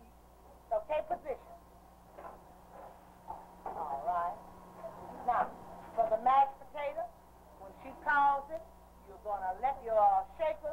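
A woman's voice speaking in short phrases to a class, heard on an old Super 8 film soundtrack with a steady low hum beneath.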